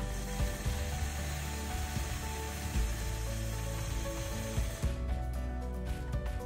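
Longarm quilting machine stitching, a fast steady mechanical rattle that stops suddenly near the end, under background music.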